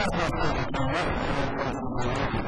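Continuous speech, a person talking.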